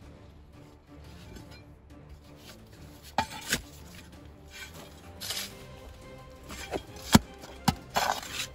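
Small hand shovel digging into gravelly, stony soil: sharp scrapes and strikes of the blade, starting about three seconds in and loudest near the end, over quiet background music.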